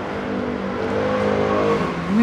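A motor vehicle engine running, a steady droning note that rises slightly in pitch in the second half.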